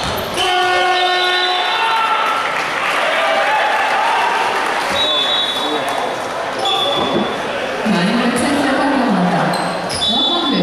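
Basketball arena sound during a game: a ball bouncing on the hardwood over steady crowd noise. A horn sounds for about a second and a half near the start, and short high whistle blasts come about halfway through.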